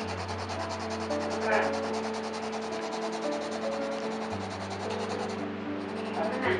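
Graphite pencil shading on sketchbook paper: a steady run of quick rubbing, scratching strokes, with one louder scratch about a second and a half in.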